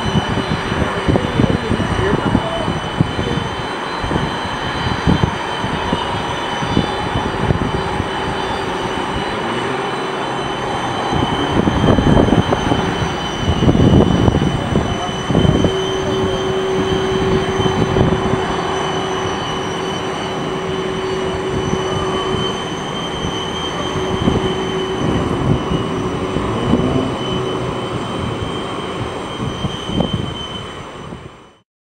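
Boeing 767-300ER's twin turbofan engines at taxi power, a steady high whine over a dense low rumble that swells for a few seconds around the middle.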